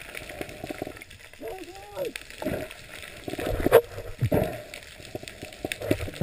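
A diver's muffled voice underwater, a short wavering sound about one and a half seconds in, over a steady fine crackle of clicks in the water, with one sharper click a little before four seconds.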